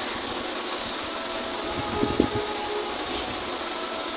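Steady whir and hiss of an electric fan running in the room, with a brief faint sound about two seconds in.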